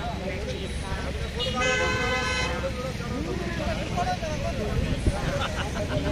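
A vehicle horn sounds once, about a second and a half in, a steady note lasting just under a second, over people talking and a low traffic rumble.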